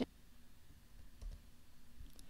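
A few faint computer keyboard clicks over quiet room tone, about a second in, as text is entered in a web form.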